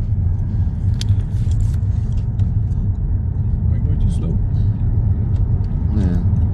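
Car road noise heard from inside the cabin: a steady low rumble of the engine and tyres as the car drives slowly along a narrow road, with a few light clicks and knocks about a second in.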